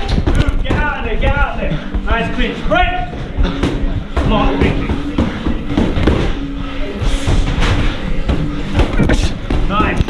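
Boxing sparring at close range: repeated thuds of gloved punches and footwork on the ring, over music and voices.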